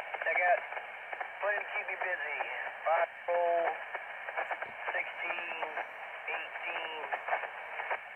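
Another ham operator's voice received over an amateur radio transceiver's speaker. It sounds narrow and telephone-like, with a steady hiss under the words.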